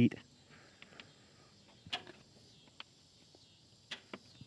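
Mostly quiet, with a few faint, light clicks as a hand handles the plastic air box cover in the engine bay.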